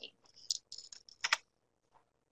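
A handful of light clicks and taps on a computer keyboard within about a second and a half, the loudest a sharp pair near the middle.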